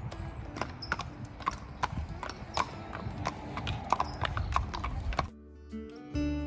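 Hooves of two horses, one a quarter horse, clip-clopping at a walk on a paved road, in an uneven run of sharp knocks. Acoustic guitar music comes in suddenly near the end.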